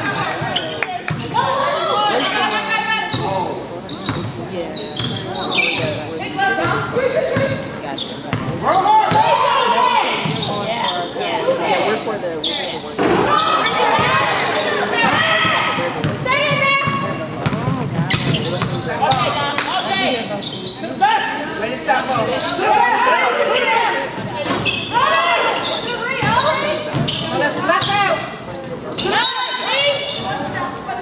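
A basketball dribbled and bouncing on a hardwood gym floor during live play, with players and coaches shouting, all echoing in a large gym.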